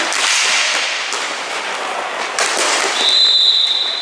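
Inline hockey play: skate wheels rolling and scraping on the plastic tile floor, with sharp clacks of sticks and puck. About three seconds in, a referee's whistle blows one long, steady, high note, stopping play.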